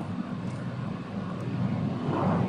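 Steady low hum with a faint murmur of background noise, the ambient sound of a large indoor hall.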